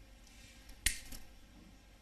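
A single sharp click about a second in, followed by a couple of fainter clicks, during a pause in a man's speech.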